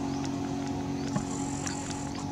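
A steady low hum, with several brief high-pitched chirps and a few faint clicks over it.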